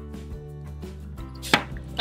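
Soft background music with one sharp click of small plastic toy parts about one and a half seconds in, as a plastic doll has its boots put on and is handled.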